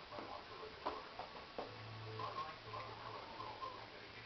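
Two sharp clicks about three-quarters of a second apart, with a few fainter ticks and a low hum in a small room.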